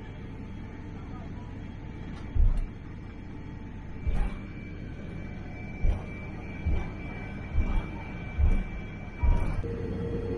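Steady low cabin rumble of a Boeing 787-8 taxiing, with a faint steady whine, broken by about seven short, dull, low thumps at uneven intervals. Music begins near the end.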